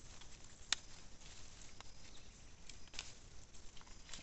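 Faint rustling of fava bean vines and leaves as pods are picked by hand, with a few scattered sharp clicks of pods snapping off their stems, the loudest about three-quarters of a second in.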